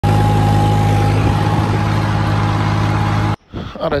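John Deere tractor's diesel engine running steadily, heard loud from the driver's seat. It cuts off abruptly about three and a half seconds in, and a man's voice follows briefly.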